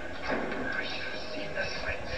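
Film dialogue playing from a television's speakers, over a steady low hum.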